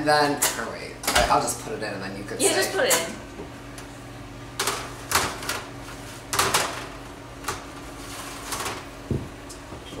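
Metal baking sheet clattering against the wire rack of a wall oven as it is slid in, a few sharp clicks and scrapes, then a dull thump near the end as the oven door is shut.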